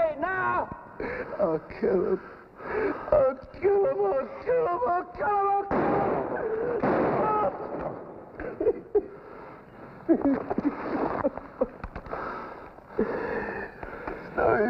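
A man's voice making short, wordless vocal sounds, broken by a few longer, louder noisy stretches.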